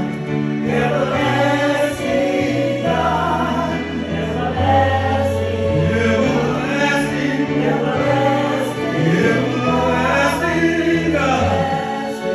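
A gospel song sung by a man into a microphone, over sustained chords on an electronic keyboard that change every second or two.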